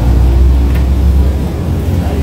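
Low, steady rumble of a nearby motor vehicle's engine.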